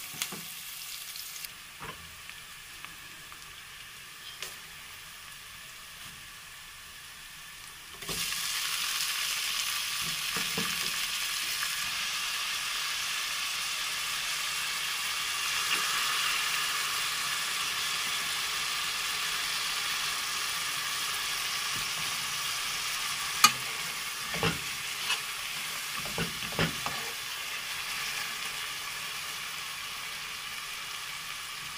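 Diced onion and chopped tomato frying in oil in a nonstick pot, a steady sizzle that gets markedly louder about eight seconds in. Near the end a few sharp knocks come from the stirring utensil against the pot.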